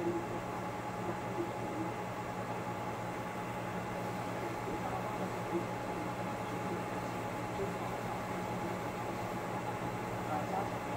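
Steady background hum and hiss of running equipment, with a few constant low hum tones underneath and no change throughout.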